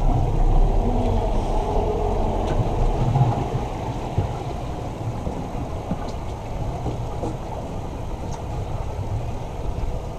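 Twin Honda outboard motors running at a low, steady rumble, a little louder in the first three seconds.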